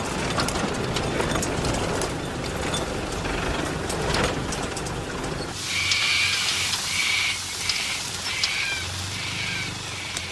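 Land Rover four-wheel drive's engine running as it drives over rough ground, heard inside the cab with rattling. About five and a half seconds in, the sound changes to the engine rumbling more faintly under a repeated high-pitched pulsing sound.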